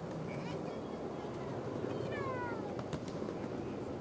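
Ride-on miniature train running along its track with a steady rumble, and a few light clicks. About halfway through comes a short high squeal that falls in pitch.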